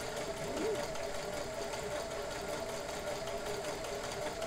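A 1970s Kenmore 158.1941 all-metal sewing machine running steadily as it sews a rickrack stretch stitch, a steady motor hum. Its built-in cams feed the fabric forward and back.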